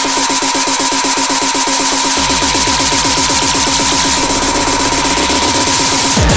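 Speedcore electronic music: a very fast, even stream of hits over a steady high tone, with the deep bass kick dropped out. The heavy low kick drum comes back in right at the end.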